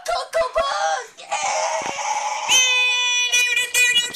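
A teenage boy's loud wordless yelling and screaming, turning about halfway through into a long, high-pitched held cry.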